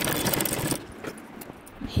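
Gemini sewing machine stitching through gold tinsel fringe lace, a rapid clatter of needle strokes that stops a little under a second in.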